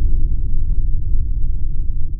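Deep, loud, steady rumble of an intro logo-sting sound effect.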